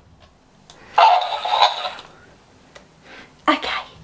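Talking hamster plush toy playing back a recorded laugh through its small speaker: a breathy burst about a second long, starting about a second in, then a short vocal snippet near the end.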